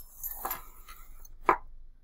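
A short scraping rustle, then one sharp tap or click about a second and a half in.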